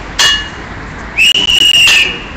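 A short sharp sound near the start, then one long, loud, steady blast on a shrill whistle from about a second in, over background street noise.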